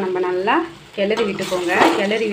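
Ivy gourd in masala frying and sizzling in a steel kadai as it is stirred with a spatula. A pitched human voice with gliding tones sounds over the frying and is the loudest thing heard.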